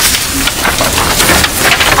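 A loud, steady crackling hiss like static, with no voice over it.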